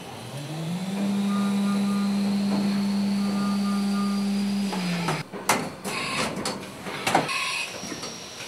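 Haas VF-2SS CNC vertical mill cutting an aluminum part with an end mill: a steady tone that rises in pitch about half a second in, holds for about four seconds, then falls away around five seconds in, followed by a run of sharp clicks and rattles.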